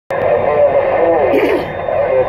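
A voice coming in over a Uniden Grant XL CB radio's speaker. It sounds thin and cut off at the top, as received radio audio does, with a faint steady high tone under it.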